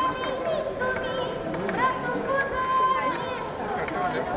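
A voice throughout, with outdoor crowd noise behind it.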